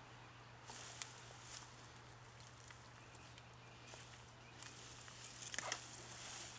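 Faint rustling and crumbling of soil and potato foliage as gloved hands dig through a tub of garden soil, with a few small clicks and two louder spells of scraping, about a second in and near the end.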